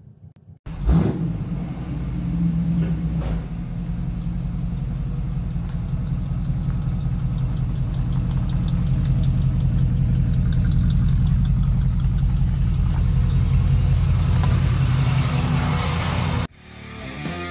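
Chevrolet squarebody truck's engine running, heard low behind the truck at the exhaust. It comes in suddenly about a second in with a brief loud flare, then runs steadily and slowly grows louder toward the end.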